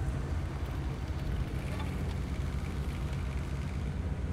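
Diesel engine of a SealMaster Crack Pro mastic melter-applicator running steadily while hot mastic is dispensed: an even, low rumble with no change in speed.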